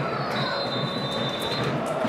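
Referee's whistle: one long, shrill blast over steady stadium crowd noise, stopping a little before the end.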